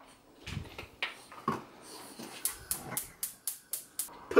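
Gas hob's spark igniter clicking rapidly, about six sharp ticks at roughly four a second in the second half, as the burner knob is held to light the ring under a frying pan. A couple of brief, low voice-like sounds come in the first second and a half.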